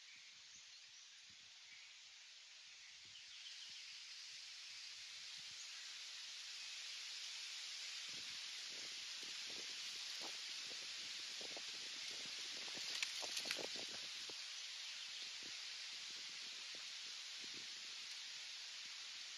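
Wind through the trees rustling the leaves: a faint, steady hiss that swells a few seconds in and eases near the end, with a short spell of leaf crackling about two-thirds of the way through.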